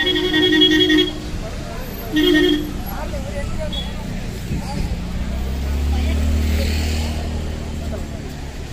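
Vehicle horn sounding twice, a one-second blast and then a shorter one, followed from about five seconds in by the low rumble of a vehicle engine.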